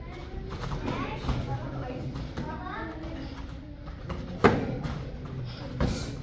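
Murmur of children's and adults' voices in a hall, with a sharp slap about four and a half seconds in and a smaller one near the end: blows landing during full-contact karate sparring.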